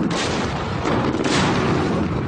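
Artillery fire: a continuous rumble of shelling, with two sharper reports, one just after the start and another a little past a second in.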